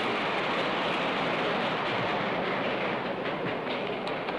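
A hearing-room audience applauding: a dense, steady clatter of clapping that thins into scattered single claps near the end.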